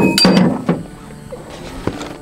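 Clinks and knocks of hunting gear being handled in a pickup truck bed. A quick cluster comes in the first half-second or so, and a single sharp click near the end.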